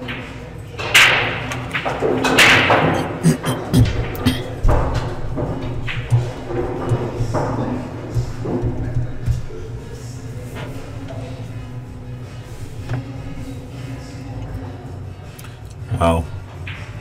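Pool hall room noise: background chatter and music, with a few thuds and scattered clicks, loudest in the first five seconds.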